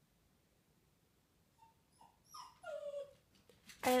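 Shih-Poo dog whimpering: a few short, high whines beginning a little under two seconds in, the last one sliding down in pitch. A woman's voice briefly starts to speak at the very end.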